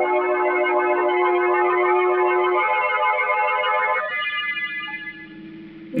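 Organ music bridge marking a scene change in a radio drama: held chords that change about four seconds in, then drop much quieter for the last second or so.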